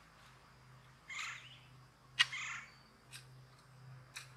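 Potato fork working wet, sandy soil: a short scrape of dirt about a second in, then a sharp click as the tines strike, followed at once by another scrape, and two fainter clicks later.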